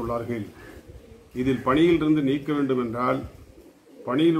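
A man speaking in short phrases, with a dove cooing in the background in the pauses between them.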